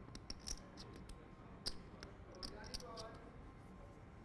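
Poker chips clicking as a player fingers and handles his chip stack: a faint, irregular run of sharp little clicks.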